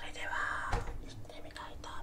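A man whispering in two short phrases, with a few faint clicks in between.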